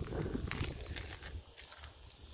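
Steady high-pitched buzz of insects in dry scrub, with low wind rumble on the microphone underneath.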